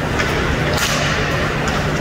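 Ice hockey play on the ice: a sharp slap of a hockey stick on the puck just under a second in, with a fainter click near the start, over the steady low hum of the rink.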